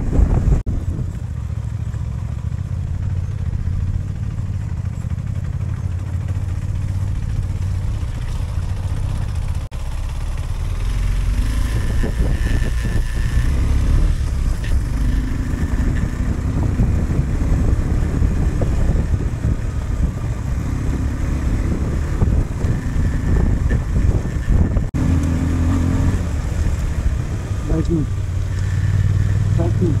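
BMW F 850 GS Adventure's parallel-twin engine running as the motorcycle is ridden along a rough gravel track, with wind on the helmet microphone. The engine sound stays low and steady, with two very short drops in level, about ten seconds in and again near twenty-five seconds.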